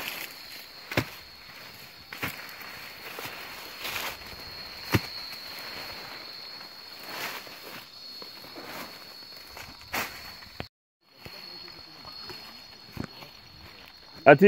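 Footsteps and rustling through brush and leafy saplings, with sharp snaps or knocks every second or two as the bush is pushed through and cut. A steady high-pitched whine runs underneath, and the sound cuts out completely for about half a second near the eleven-second mark.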